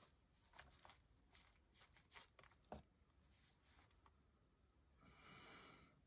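Near silence: room tone, with a few faint ticks and light scratches of a water brush working on paper, and a soft hiss about five seconds in.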